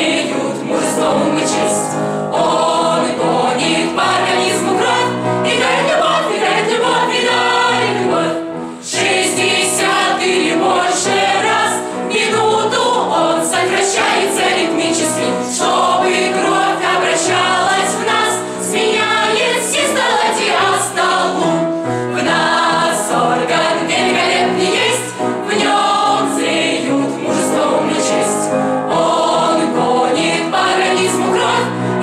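Mixed choir of men's and women's voices singing a song together, with a brief break about nine seconds in.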